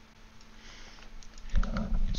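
A few faint computer mouse clicks over quiet room noise, then a brief louder low sound near the end.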